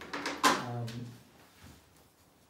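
A sharp knock about half a second in, over a brief low murmur of a man's voice that lasts about a second.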